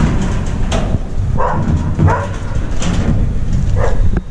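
A dog barking about five times in short separate barks, over a steady low rumble.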